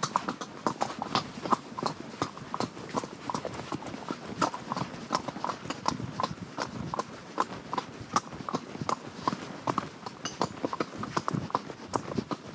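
A ridden horse's hooves clip-clopping on a dirt and gravel track, a steady run of about three to four sharp hoof strikes a second.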